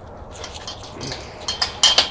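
Metal clinks and rattles from a carabiner being worked on a chain-link kennel gate latch: a few sharp clicks in the last half second, one with a brief metallic ring.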